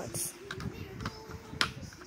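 Plastic DVD case being handled, giving a few sharp clicks, the loudest a snap about one and a half seconds in.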